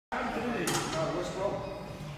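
Indistinct voices talking, with a short hissing or rattling noise less than a second in.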